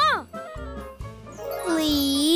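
Cartoon background music for children, with a short up-and-down sliding sound at the very start. From about halfway a shimmering sparkle sound effect swells in over a low gliding tone.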